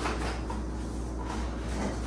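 Soft paper rustling and handling as a greeting card is pulled from its envelope, with a few faint light clicks over a steady low room hum.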